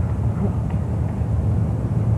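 Steady low hum and rumble of background noise, with no clear events.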